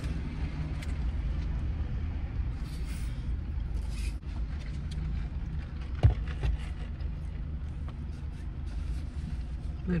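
Steady low rumble of a car idling, heard inside the cabin, with a single sharp click about six seconds in.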